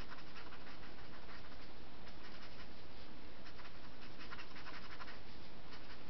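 Pen tip scratching on paper in quick back-and-forth shading strokes, coming in short runs with brief pauses, as gray shadows are filled in on a comic page.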